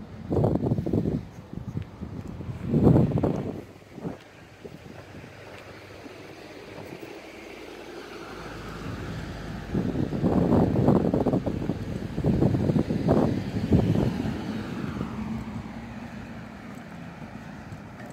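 A car drives past on the road: its engine and tyre noise swell over several seconds and fade again near the end. Gusts of wind buffet the microphone in the first few seconds.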